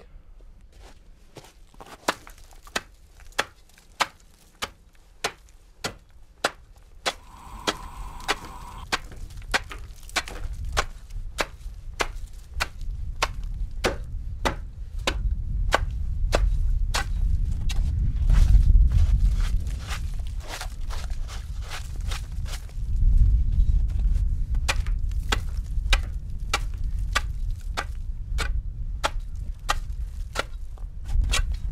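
A steady series of sharp crunching clicks, about two a second, running on without a break. From about seven seconds in, gusts of wind rumble on the microphone, strongest in the middle and again near the end.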